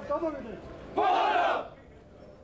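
A crowd of voices shouting together in one short, loud burst about a second in.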